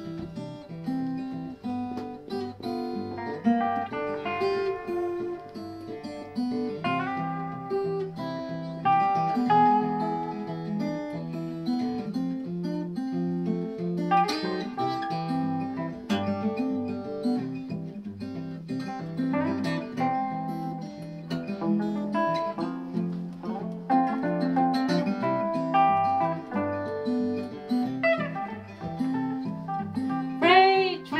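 Acoustic guitar and hollow-body electric archtop guitar playing an instrumental intro together: fingerpicked melody notes over a steady, even bass line.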